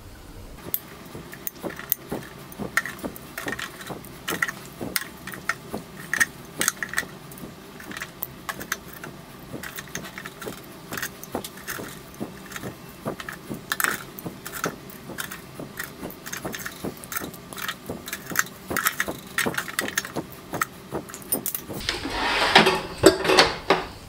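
Metal kitchen tongs clicking and scraping against an air fryer's wire grill basket and a plate as cooked chicken kebab pieces are picked up and moved, in many small irregular clinks. A louder stretch of handling noise comes near the end.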